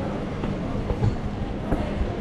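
Steady low rumble with a few faint knocks, typical of handling noise from a hand-held camera being gripped and moved.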